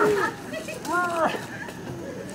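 High-pitched child's voice calling out twice, each call a short rise and fall in pitch, about a second apart.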